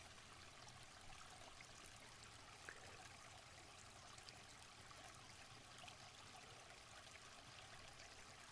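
Near silence: room tone with a faint steady hiss and one faint tick a little under three seconds in.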